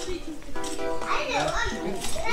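A child's high voice speaking briefly over background music, about halfway through.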